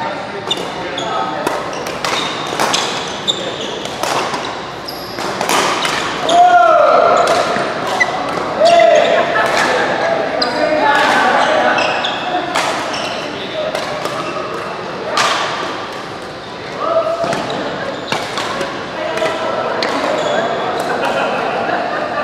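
Badminton doubles rally: rackets strike the shuttlecock again and again in sharp cracks that echo in a large hall, with players' voices calling in between.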